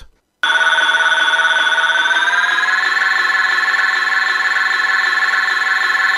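Electronic PKE meter sound effect: a steady, rapidly pulsing warbling tone that starts about half a second in and steps up slightly in pitch two to three seconds in.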